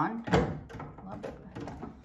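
Plastic top of a Gardyn hydroponic unit being set down onto its plastic water reservoir: one thunk about a third of a second in, then lighter plastic knocks and rattles as it settles into place.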